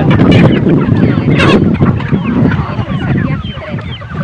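A flock of domestic poultry calling, with many short calls overlapping continuously.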